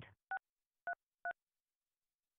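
Touch-tone (DTMF) keypad tones: three short two-note beeps, one about a third of a second in and two close together around one second, as digits of a meeting password are keyed in on a phone dialing into a conference call.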